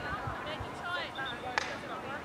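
A field hockey stick strikes the ball once, a single sharp crack about one and a half seconds in, with spectators' voices in the background.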